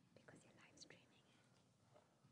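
Faint whispered speech, a person talking quietly off-mic in short bits.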